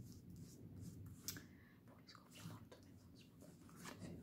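Near silence, with a few faint, brief clicks and rustles of oracle cards being handled as a card is drawn from the deck.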